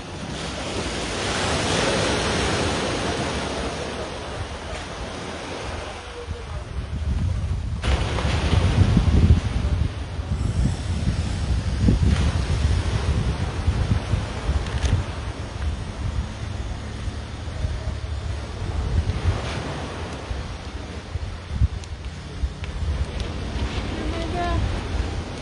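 Wind buffeting the microphone, with surf washing on the beach over the first few seconds. About eight seconds in, the low wind rumble grows heavier and gusty.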